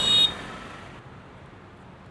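Street traffic with a short, high-pitched vehicle horn beep right at the start; the traffic noise then falls away to a faint steady background.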